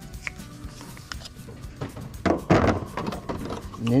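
Handling noise as plastic window-cleaning T-bars are swapped on a wooden cone pole adapter: a light click near the start, then a short, louder clatter and rub a little past halfway.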